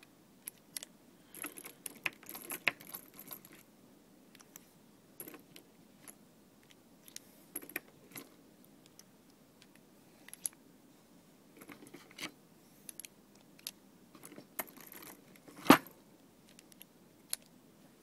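Small metallic clicks and jingling of loose revolver cartridges being handled and loaded into the cylinder, with one much louder sharp crack about three-quarters of the way through.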